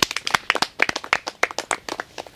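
A small group of people clapping their hands, many separate claps that die away near the end.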